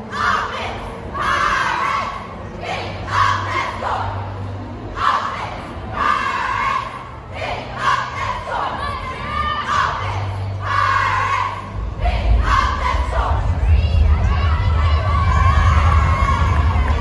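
Cheerleading squad shouting a sideline chant in unison, with short call-outs about once a second, over crowd cheering. The sound grows louder and fuller in the last few seconds.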